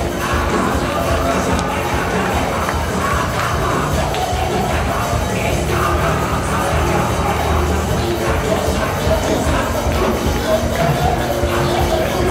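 Church worship music playing steadily, with the voices of a standing congregation and some cheering over it.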